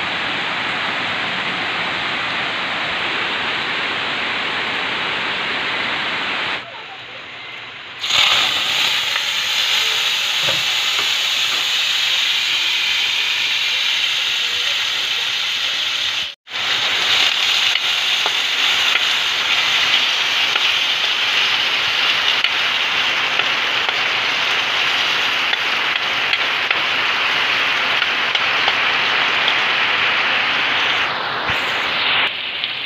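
Garlic cloves and tomato wedges sizzling in oil in a wok over an open wood fire: a steady frying hiss. It comes in louder and brighter about eight seconds in, after a duller steady hiss and a short quieter break, and drops out for an instant near the middle.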